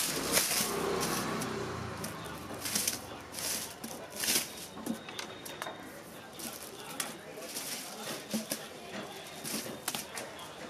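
Thin paper kites rustling and crinkling in short bursts as they are handled, laid out and pressed flat.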